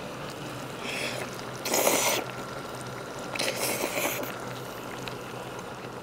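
A person slurping a mouthful of cheese-covered tteokbokki: two loud, hissing slurps about two and three and a half seconds in, with a fainter one about a second in.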